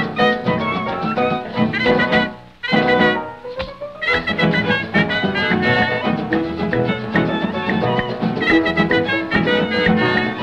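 Instrumental passage of a 1934 Cuban dance-band recording, with the whole band playing. The music drops away briefly about two and a half seconds in, then a rising slide leads the full band back in at about four seconds.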